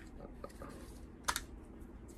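Light plastic clicks and ticks as the arms of a Joseph Joseph TriScale folding kitchen scale are handled and swung open by hand, with one sharper click a little after halfway.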